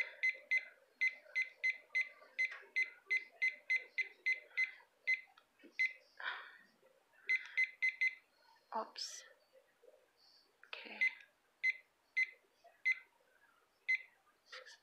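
Digital kitchen timer beeping at each button press as it is set to one hour: a run of short high beeps about three a second, then two shorter groups of beeps with pauses between.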